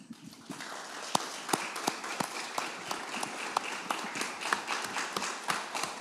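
Audience applause: many people clapping in a room, starting about half a second in after a speech ends.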